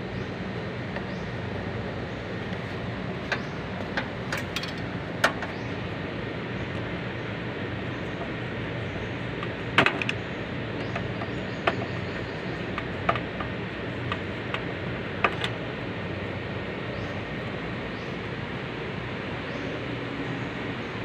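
Scattered light clicks and taps of a screwdriver and wire connectors on the metal terminal block of an air conditioner outdoor unit, over a steady background hum.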